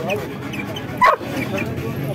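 A dog barks once, sharply, about a second in, over people talking.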